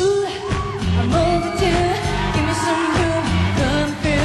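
A woman singing live into a microphone over a loud pop backing track with a heavy beat. She holds long notes that slide up and down between pitches, without clear words.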